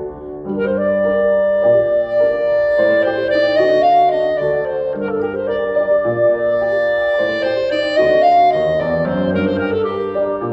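Clarinet and grand piano playing a Cuban contradanza: the piano is already sounding, and the clarinet comes in with the melody about half a second in.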